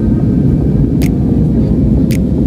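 Cabin noise of a jet airliner climbing: a loud, steady low rumble of engines and airflow, with a short high tick about once a second.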